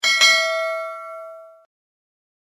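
Notification-bell sound effect: a single bright bell ding that rings with several tones and fades out, cutting off after about a second and a half.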